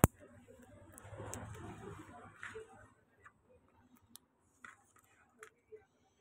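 Clear plastic protective film being handled and pressed onto a phone's back: a sharp click at the start, about two seconds of rustling and crinkling, then a few light ticks.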